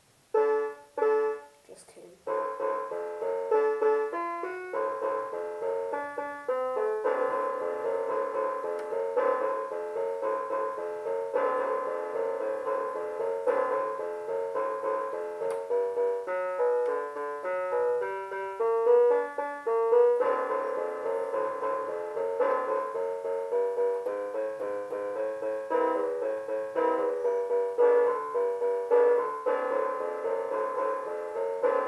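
A little toy electronic keyboard playing a simple boogie piece by hand, stop-start for the first two seconds and then steady.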